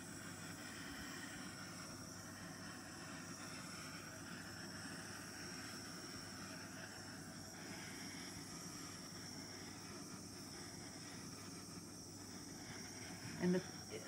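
Small handheld torch burning with a steady, faint hiss, held high above wet acrylic pour paint to warm it.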